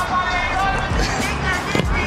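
Background music, with a football struck once by a penalty kick near the end.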